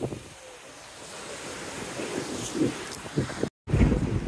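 Wind gusting on the microphone over the steady wash of sea surf on a shingle beach, with a split-second dropout near the end.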